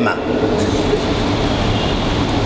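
Steady, loud rushing noise with a faint low hum beneath it.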